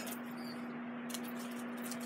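A steady low hum, one even tone, with faint rustling and a couple of soft ticks about a second in as a cloth tape measure is wound up by hand.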